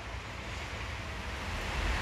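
Outdoor background noise: a low rumble of wind on the microphone under a steady soft hiss, growing slightly louder toward the end.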